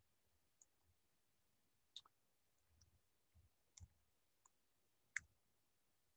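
Faint keystrokes on a computer keyboard: about seven separate, irregularly spaced clicks.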